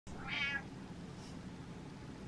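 Domestic cat giving one short meow about a third of a second in.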